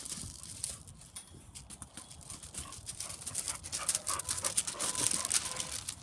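Footsteps of a person and a dog crunching on gravel, getting louder and busier in the second half, with a dog panting.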